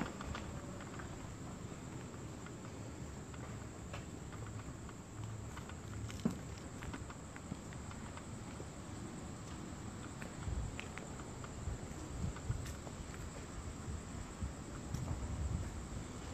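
Crickets chirping in a steady high trill, with faint footsteps and camera handling noise underneath.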